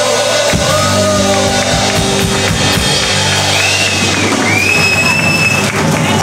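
Live worship band playing: acoustic and electric guitars, drum kit and singers, with sustained chords.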